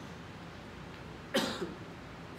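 A single short cough a little after halfway through, following a second or so of quiet room tone.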